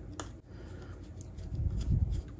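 Screwdriver turning out the small screw that holds the light socket fixture on a Singer 301A sewing machine: a few light metal clicks and scrapes, one sharper click about a quarter second in, and a low thump near the end.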